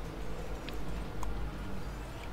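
Steady low outdoor rumble of city background, with two faint short clicks near the middle.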